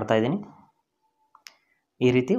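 The tail of a man's speech, then a short double click about one and a half seconds in, the second click sharper than the first.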